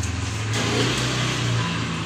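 An engine running steadily with a low hum.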